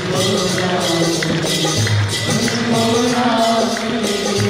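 Live devotional kirtan music with a melody line, a bass drum pulse and steady, evenly spaced strikes of small hand cymbals.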